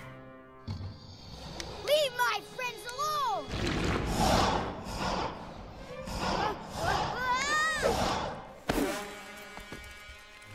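Animated-film soundtrack: background music with a few short rising-and-falling vocal sounds, around two, three and eight seconds in.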